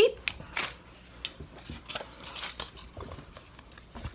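Paper craft supplies rustling and crinkling as they are handled, with scattered soft clicks and taps.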